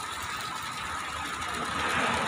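Water from the fountain's wall spouts splashing into the pool: a steady rush with a faint high hum through it, growing a little louder near the end.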